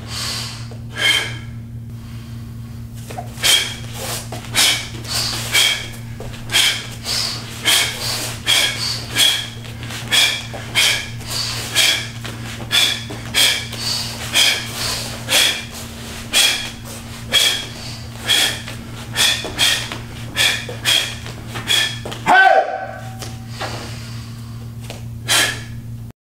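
Short, sharp exhalations, about two a second, as a martial artist breathes out with each block, kick and punch of a taekwondo form, ending in a short shout (kihap) about 22 seconds in. A steady low hum runs underneath.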